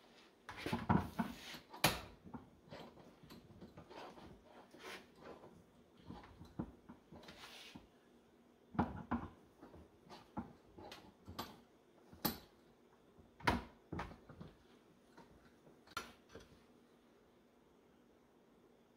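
Irregular metal clanks and knocks as a HydroVac vacuum brake booster part is turned over and clamped in a bench vise and worked with a hand tool, with a few sharper knocks standing out.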